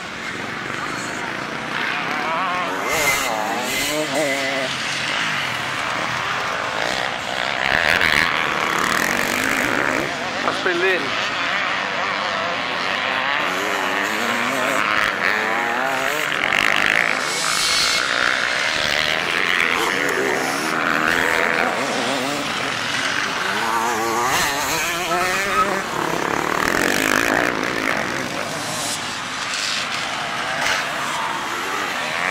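Several enduro motorcycles revving hard as they climb a winding dirt hill, their engine notes rising and falling over and over.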